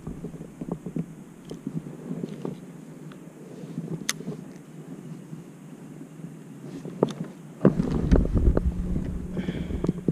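Scattered light clicks and knocks of fishing gear being handled in a plastic kayak as the rubber landing net is set into its bow holder. About three quarters of the way through, a low rumble of wind or handling on the camera's microphone comes in and runs on to the end.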